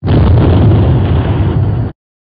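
Explosion sound effect: a sudden loud blast with a deep rumble that holds for about two seconds and cuts off abruptly.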